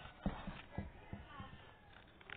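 A run of faint, irregular knocks or taps, about half a dozen in the first second and a half.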